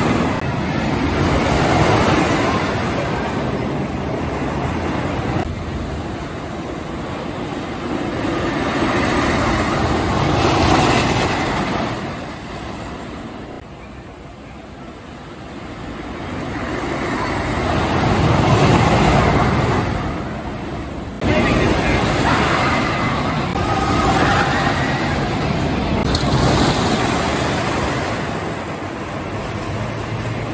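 Wooden roller coaster train rumbling along its track, swelling loud and fading again several times as it passes, loudest about two-thirds of the way through, with a sudden jump in loudness just after that.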